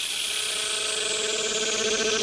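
Funkot electronic dance remix in a breakdown with no kick or bass: a noise sweep falls slowly in pitch while a fast-pulsing synth line builds up underneath and grows a little louder.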